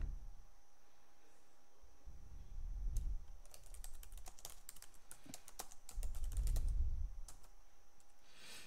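Typing on a computer keyboard: a run of quick key clicks in the middle, with two low rumbles underneath.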